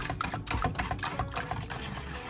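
Wire whisk beating egg custard in a stainless steel bowl: quick clicking of the wires against the metal, about four or five strokes a second.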